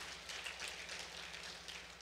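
A quiet pause in a church auditorium's sound: faint, even room noise with a low steady hum.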